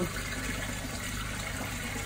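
Steady rushing of water running in a manhole, with a low steady hum underneath.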